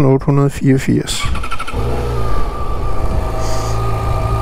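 Yamaha XJ6's 600 cc inline-four, derived from the R6 engine, cranking briefly and catching about a second and a half in, then running at an even, steady idle that sounds like a sewing machine.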